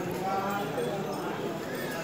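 Overlapping voices of a group of walking pilgrims, with no clear words, louder in the first half.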